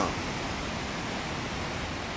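Steady, even rushing of ocean surf and wind, with no single wave standing out.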